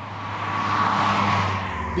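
Toyota GR Corolla driving past on the road, its tyre and engine noise swelling to a peak about a second in and then fading.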